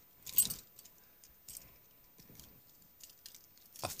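A bunch of metal keys on a carabiner jangling as they are handled: one clear jingle about half a second in, then a few lighter rattles.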